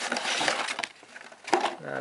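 Cardboard phone packaging handled by hand: rustling and scraping of the box and its card insert for about the first second, then a sharp tap about one and a half seconds in.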